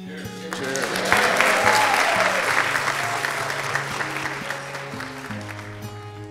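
A room of guests applauding at the end of a toast; the applause swells about a second in and then slowly fades. Soft background guitar music runs underneath.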